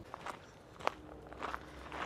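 Quiet footsteps on a dirt trail strewn with dry leaves: a few scattered soft steps, the sharpest just under a second in.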